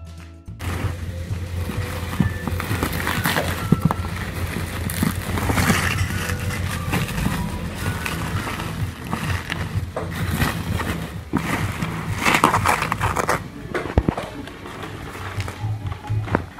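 Plastic bubble wrap crinkling and rustling in irregular bursts as it is pulled and peeled off cardboard boxes by hand, over background music.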